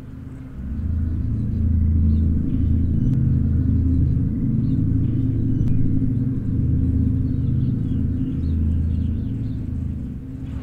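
A low, ominous film-score drone that swells in about half a second in and then holds steady, with faint chirps above it.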